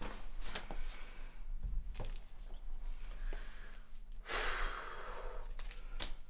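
A person sighs, one long breathy exhale a little past the middle, among small handling clicks and rustles.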